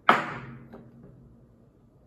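A metal bottle opener made from a .50-calibre cartridge knocked down onto a wooden tabletop: one sharp knock that rings and fades over about a second, with a small click just after.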